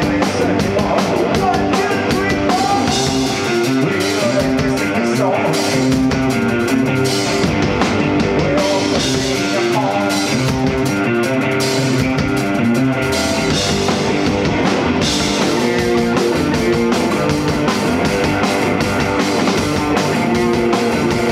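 Live rock band playing electric guitars over a drum kit at a steady, loud level.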